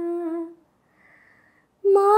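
A woman singing unaccompanied, holding a steady note that stops about half a second in. After a short pause with a soft breath, she comes back in louder just before the end.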